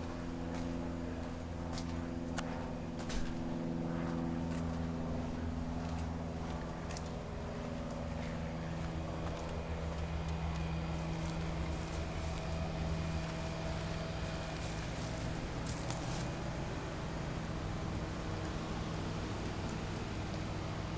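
Mercedes-Benz coupe's engine idling steadily, with a few faint clicks over it.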